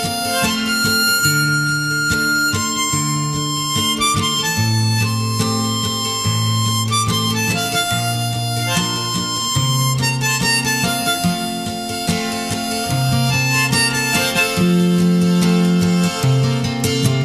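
Folk song's instrumental passage: harmonica playing the melody in long held notes over acoustic guitar, with a low bass line changing note every second or two.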